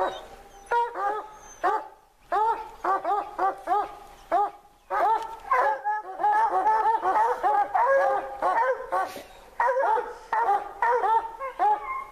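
Pack of hunting hounds baying at the foot of the tree where they hold a treed cougar: short, rapid barks, a few at first and then several dogs overlapping steadily from about five seconds in.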